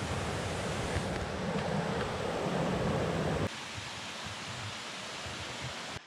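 Steady rushing outdoor noise with a fluctuating low rumble on the microphone. It drops abruptly to a much quieter background about three and a half seconds in.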